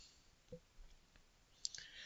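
Near silence in a pause of speech, with a few faint mouth clicks and a short soft intake of breath near the end.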